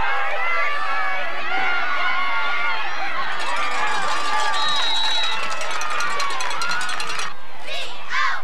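Many voices at once at a youth football game, spectators and players talking and shouting over each other. A short, steady high whistle sounds about four and a half seconds in.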